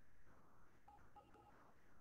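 Near silence: faint room tone of a video-call audio feed, with a few very faint short tones about a second in.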